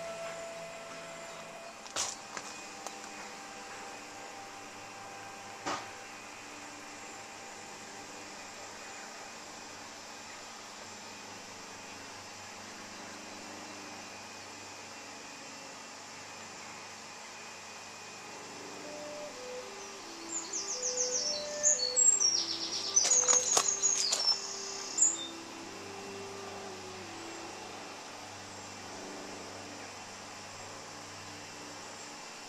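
Outdoor garden ambience with a steady low hiss; about two-thirds of the way through, a bird sings a burst of rapid high chirps and trills for several seconds, with lower notes beneath.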